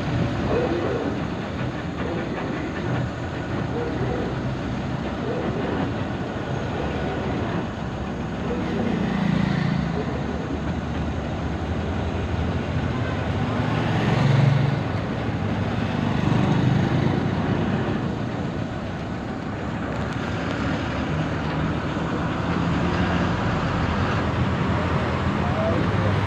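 Steady road and engine noise of a vehicle driving along a highway, heard from on board. There is a louder swell about fourteen seconds in as a motorcycle passes alongside.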